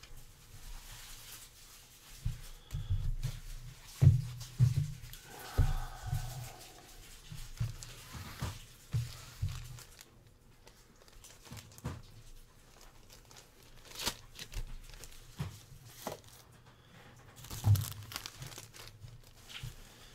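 Thin plastic card sleeves and a resealable plastic bag being handled, crinkling and rustling in irregular bursts, with soft knocks of cards and packaging on the desk and a few sharp clicks.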